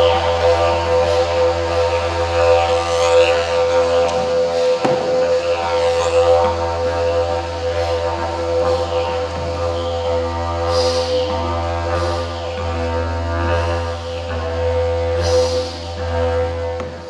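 Didgeridoo played live: a continuous low drone with a steady pitch, its upper overtones shifting and sweeping as the player changes mouth and tongue shape. Two short hissing accents break through, about eleven and fifteen seconds in.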